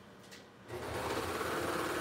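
Baby Lock Imagine serger (overlocker) starts about two-thirds of a second in and runs steadily at speed, stitching a seam in t-shirt knit.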